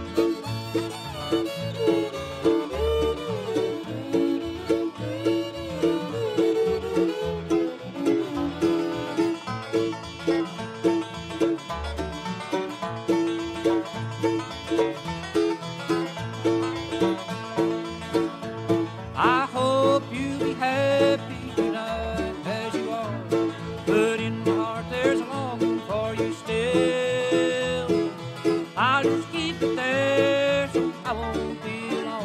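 Bluegrass band playing an instrumental break, the banjo's fast picked rolls over guitar and a bass thumping on the beat. A sliding lead line comes in about two-thirds of the way through.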